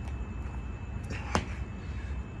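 A single sharp slap a little past halfway, over a steady low rumble: shoes landing on the mat as the feet jump in from the plank during a burpee.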